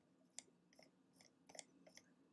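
Near silence with a few faint, short clicks spread across about two seconds.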